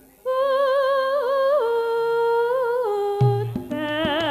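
A solo female voice sings long, slowly descending held notes with vibrato in a Javanese gamelan style. Near the end, drum strokes and the gamelan ensemble come in underneath.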